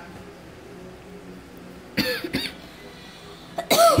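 Two short, high-pitched bursts of laughter: a brief one about halfway through and a louder one near the end.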